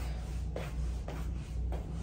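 Three slow footsteps in slides on a tile floor, about half a second apart, over a steady low hum.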